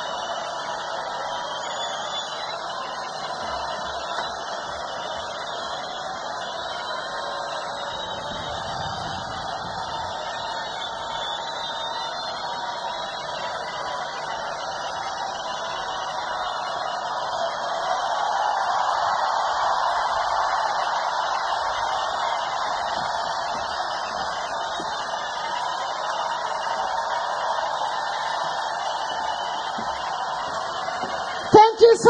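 Large festival crowd cheering and shouting for an encore while the stage is empty, a steady din that swells louder about two-thirds of the way in.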